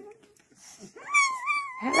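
A puppy whining: one high, slightly wavering cry starting about halfway in and lasting nearly a second, as littermates pile on it in rough play.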